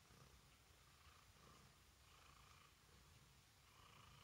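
Faint purring of a domestic cat, a low steady rumble that swells and eases with its breaths, roughly once a second.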